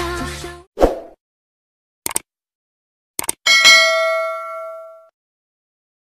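Music ends in the first moment, followed by a short low thump, two quick double clicks, then a single bell-like ding that rings out for about a second and a half.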